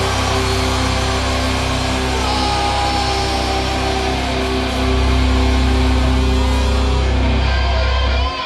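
Metal band with distorted electric guitars, bass and drums holding one loud sustained blast of a chord. It gets louder about five seconds in and is cut off sharply right at the end: the band's planned 'pêche', a short all-out noise blast on cue.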